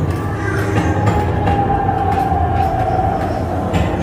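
Steady low rumble of a Haunted Mansion ride vehicle rolling along its track in the dark. In the middle a long thin tone slowly sinks in pitch.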